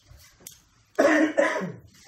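A person coughing: a loud double cough about a second in, close to the microphone.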